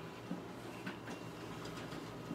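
Xerox WorkCentre 7830 colour copier running while it prints, a steady quiet whir with a thin high tone and a few faint clicks.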